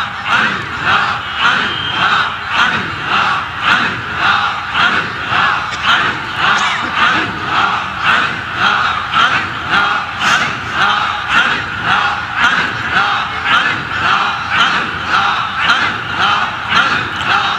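A gathering of men chanting Sufi zikr in unison, a forceful rhythmic 'Allah' repeated about one and a half times a second, each stroke pushed out as a strike on the heart.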